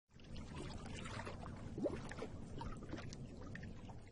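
A quiet recorded water sound effect: a steady wash of pouring, bubbling water with a few small bubble blips. It is played as the sound clue for an animal in a listening quiz.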